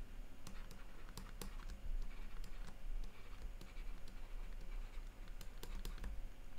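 Stylus tapping and scratching on a tablet screen while handwriting: irregular light clicks over a low steady hum.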